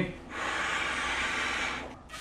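One long, steady breath blown by mouth into the valve of an inflatable footrest cushion to inflate it: an even airy hiss lasting about a second and a half.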